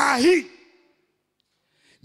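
A man's voice through a microphone ends a phrase in Swahili about half a second in, then falls to dead silence for over a second.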